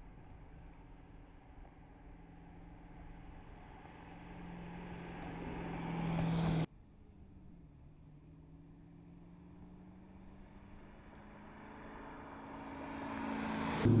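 Dodge Challenger 392 HEMI's 6.4-litre V8 running at a steady, light-throttle cruise as the car approaches, its note growing louder. It cuts off abruptly about six and a half seconds in, then a second approach builds again toward the end.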